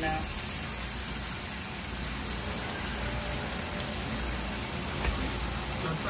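Steak meat sizzling steadily as it browns in a frying pan.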